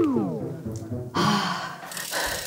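A person's voice sliding down in pitch for about half a second, then a breathy, sigh-like exhale about a second in.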